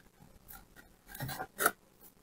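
Sisal twine rubbing and rustling as it is pulled and knotted by hand around a heart-shaped craft piece, soft at first, then two short scratchy rustles about a second in.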